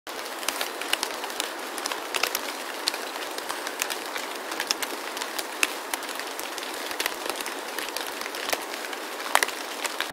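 Steady crackling hiss with many scattered small pops and clicks, cut off abruptly at the end.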